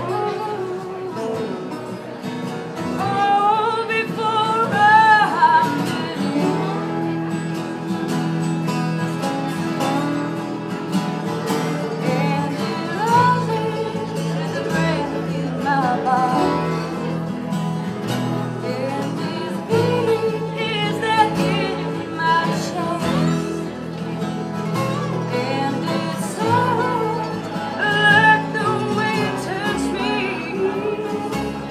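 A live acoustic string band plays: strummed acoustic guitar, upright bass, mandolin, banjo and resonator guitar, with a wavering melody line on top.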